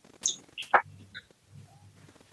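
Three short, high chirps in the first second or so, like a small bird calling.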